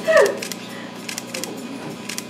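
Lull between songs in a small live-music room: a short squeal falling in pitch at the start, then low room noise with a few faint clicks.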